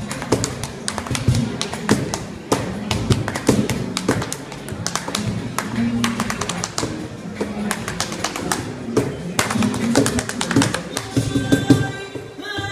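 Flamenco footwork: rapid, irregular heel and toe stamps of flamenco shoes on a hard floor, over flamenco music.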